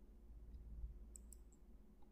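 Two faint computer mouse clicks about a second in, over a faint steady low hum.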